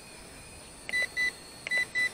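Short, high electronic beeps from the quadcopter's handheld radio transmitter: two about a second in, then three more in quicker succession near the end. They are the confirmation beeps of the controller as its flight-rate setting is switched.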